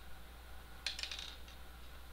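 A quick cluster of light metallic clicks about a second in, from small disk-drive screws being picked up and knocking against the desk and the plastic case.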